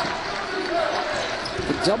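Basketball game sound in an arena: crowd noise with the ball bouncing on the hardwood court during live play.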